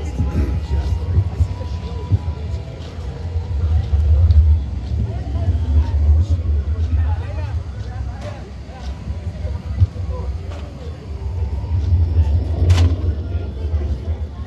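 A low rumble that swells and fades, with indistinct voices of people around it and a single sharp click near the end.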